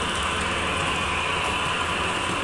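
HO scale model train rolling along the layout track: a steady whirring hiss of wheels and motor.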